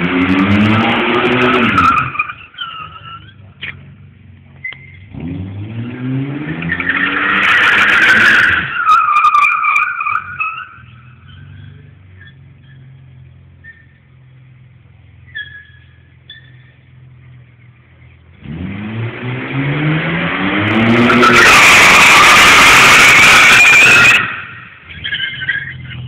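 BMW E32 735i's straight-six revving hard while its tyres squeal on the smooth garage floor, in three bursts, the last and loudest about three-quarters of the way through. Between the bursts the engine drops back to a steady idle.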